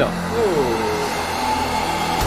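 Cinematic intro of a music video's soundtrack: a steady low drone with a thin held tone above it, and a short falling vocal sound early on.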